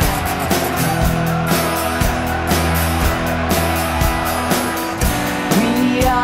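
Instrumental passage of a rock song: guitar and band over a steady drum beat, with no singing.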